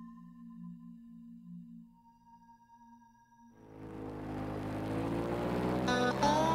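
Soft, sustained synthesizer tones, then from about halfway in an airboat's engine and propeller revving up, rising steadily in pitch and loudness.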